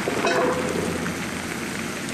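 Chicken pieces and butter sizzling and crackling in a large wok over a gas flame, a steady rain-like hiss.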